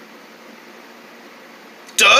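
Steady hiss of background room tone with a faint low hum; no distinct sound event.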